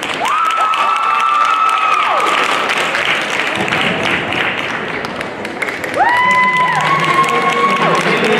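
Crowd applauding and cheering, with long high-pitched whoops near the start and again from about six seconds in.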